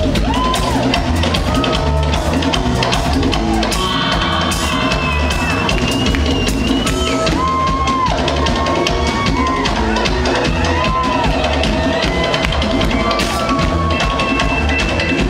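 Live reggae band playing an instrumental passage: a steady drum-kit beat and heavy bass line, with held and sliding melody lines above them.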